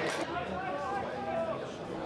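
Faint, distant voices at a football match, players or spectators calling out, over the open-air background of the ground.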